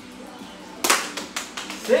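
A thrown small plastic ball landing: a sharp tap a little under a second in and a lighter tap about half a second later, as it strikes and bounces on the hard floor or cups.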